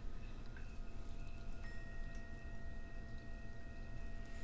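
Faint, soft chime-like tones: several held notes ringing on steadily, with a new higher note coming in about halfway through.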